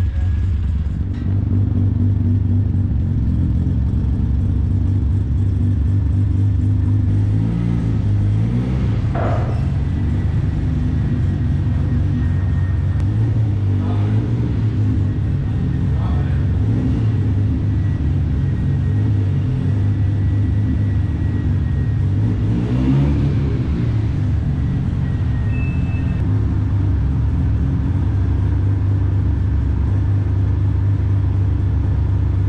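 Mazda RX-7 FD's rotary engine idling with a steady, choppy low rumble, blipped up briefly twice, about a third of the way in and again near three quarters through.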